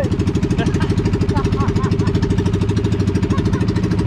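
Outrigger boat's engine running steadily under way, a fast, even chugging.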